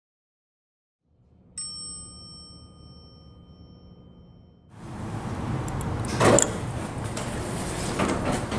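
A single bell-like chime ding that rings out and fades over about two seconds. From about five seconds in there is a steady background hiss of live recording, with a sharp knock about a second later.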